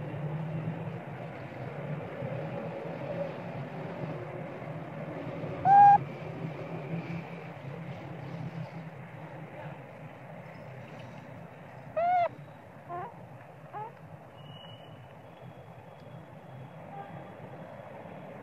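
Two short calls that rise and fall in pitch, one about six seconds in and one about twelve seconds in, with two fainter ones soon after, over steady background noise.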